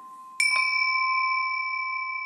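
A bell is struck about half a second in, and its clear tone rings on and slowly fades.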